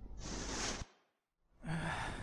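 A man's breathy sigh, about half a second long. After it comes a moment of complete dead silence, then another breathy exhale near the end.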